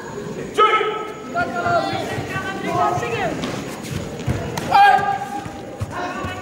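Shouted voices in a large hall at a karate kumite bout: a referee's loud call to resume fighting about half a second in, then more shouts, one falling in pitch around the middle, and another loud shout near the end. Dull thuds of bare feet on the foam mats come in between.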